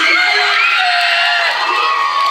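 A crowd cheering and shouting, many voices at once, loud, with a shout of "oui" at the start.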